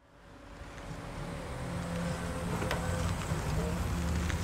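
A car engine running at low revs, a steady low rumble that fades in from silence and grows louder over the first two seconds, with a few faint clicks in the middle.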